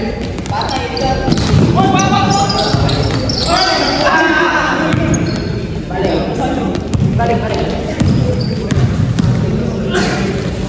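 Basketball bouncing and players' sneakers on an indoor court floor during a game, with scattered sharp impacts, in a large echoing gym.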